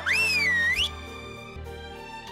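A loud finger whistle lasting under a second: its pitch sweeps up, dips, then rises again at the end. Background music carries on quietly after it.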